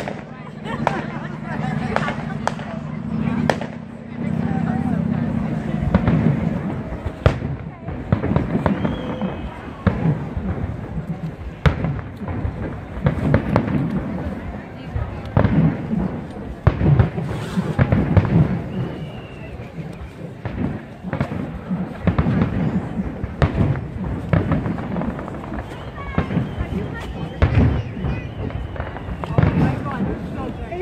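Aerial fireworks shells bursting in a long irregular series of sharp bangs, many times over, with low rumbling between them.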